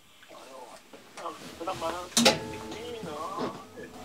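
Indistinct speech of a voice that is not the main speaker's, quieter than the surrounding talk, with one sharp click about two seconds in.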